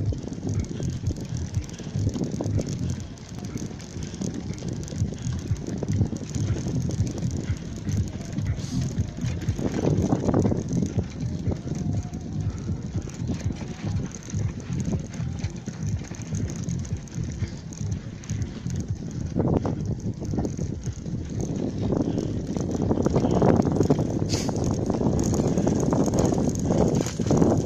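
Bicycle rolling over the crunchy playa surface: continuous tyre crunch with rattling and ticking from the bike's mechanism, growing louder over the last few seconds.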